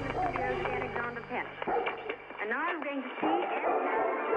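Pre-recorded sound collage for the intro film: voice samples and sliding, howl-like tones over a low steady drone, which drops out about three seconds in.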